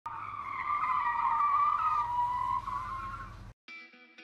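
Pinewood derby cars running down a metal track, their wheels making a wavering whine that falls slowly in pitch. It cuts off suddenly about three and a half seconds in, and steady music notes begin just after.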